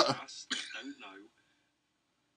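A man clearing his throat: a short voiced 'ahem' from about half a second in, then quiet.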